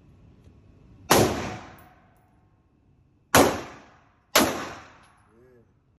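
Three pistol shots from a Canik handgun: one about a second in, then two more a second apart later on. Each sharp crack is followed by a long echoing decay in the indoor range.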